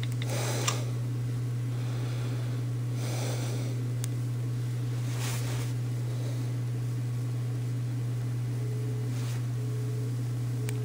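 A steady low hum with a few faint soft rustles; no bell rings.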